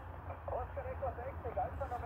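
A distant ham station's voice received on a uSDX transceiver, coming faintly from the radio's small built-in speaker as thin, narrow-band speech, over a steady low rumble.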